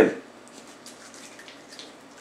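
Faint, brief scraping and slicing sounds of a knife sliding through raw pork shoulder on a plastic cutting board, over quiet room tone.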